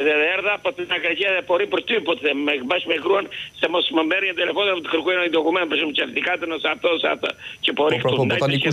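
Speech only: a male caller talking quickly and without pause over a telephone line, his voice thin and narrow, with the top of the sound cut off.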